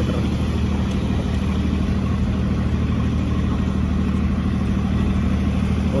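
An engine running steadily at an even speed, a low hum that does not change.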